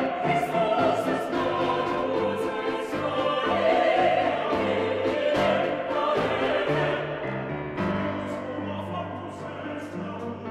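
A small mixed church choir singing a choral piece with grand piano accompaniment, the sound easing a little softer near the end.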